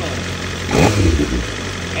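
2023 BMW superbike's inline-four engine idling in gear, then one short throttle blip about two-thirds of a second in, before it settles back to idle. The blip is what makes the ECU set the third-gear position during the quickshifter gear-adaptation relearn.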